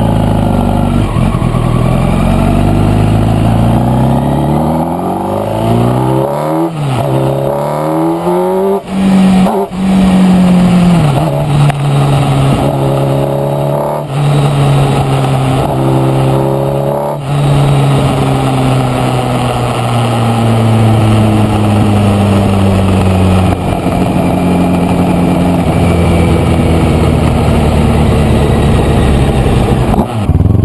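Sport motorcycle engine pulling hard, its pitch climbing and then breaking off with each quick gear change several times. It then settles into a long, slowly falling note as the bike eases off.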